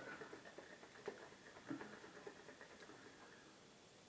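Near silence, with faint small clicks and rustling from hands handling a glass Kilner jar, mostly in the first half.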